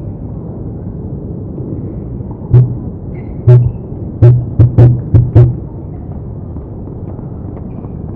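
Seven sharp, heavy thumps in an irregular run over about three seconds, the last ones coming quickly one after another, over a steady background hiss.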